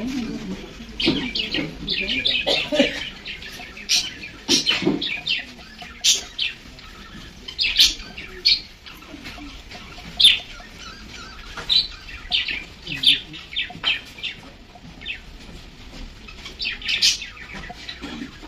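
Small birds chirping, with many short, high calls coming irregularly, sometimes in quick clusters.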